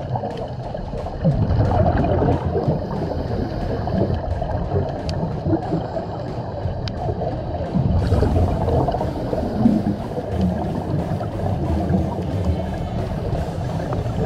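Underwater camera audio on a reef dive: muffled, uneven rushing and gurgling water noise with a few sharp clicks. A brighter hiss joins about eight seconds in.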